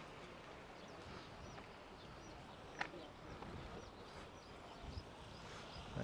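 Faint outdoor beach ambience: a low steady hiss of sea and air, with one short sharp click about three seconds in.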